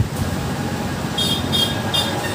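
A steady low rumble of background noise, with three short high-pitched tones in quick succession in the second half.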